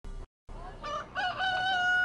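A rooster crowing: a couple of short notes about a second in, then one long held note.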